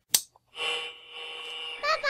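Sound-effect sting: a sharp click, then a steady held tone, and near the end a rising, voice-like pitched sound.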